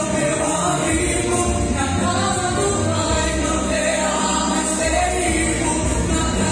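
A woman sings a Portuguese-language gospel worship song into a handheld microphone over an instrumental backing with a steady bass.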